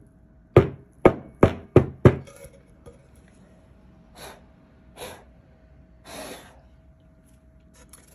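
Wooden board coated in glued-on glitter rapped down on a table over paper, five sharp knocks in quick succession in the first two seconds, knocking the loose excess glitter off. Then three softer swishes, and a faint steady hum underneath.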